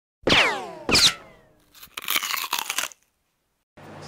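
Sound effects of an animated intro title: two sudden hits about 0.7 s apart, each with tones sliding down in pitch, then a rough noisy burst lasting about a second, with dead silence before and after.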